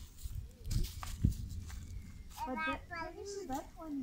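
A child's voice talking briefly in the second half, over a steady low rumble, with a couple of soft knocks about a second in.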